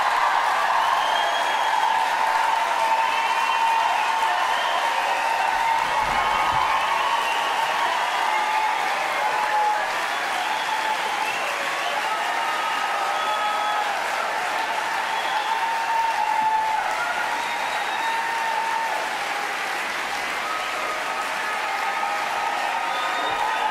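A large audience applauding steadily and at length, with voices calling out and cheering through the clapping.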